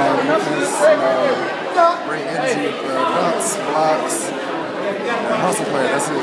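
Many people talking at once in a large hall, with overlapping voices forming a steady background chatter.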